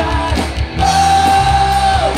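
Live band playing with a man singing over keyboards, bass and drums; a long note is held from just under a second in.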